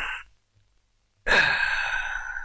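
A man letting out two long, breathy sighs: a short one at the very start and a longer one from a little past halfway.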